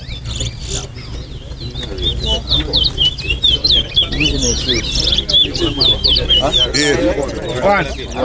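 Caged towa-towa (chestnut-bellied seed finch) singing a rapid run of quick, high chirping notes in a song race, where each song is counted. Crowd voices murmur underneath.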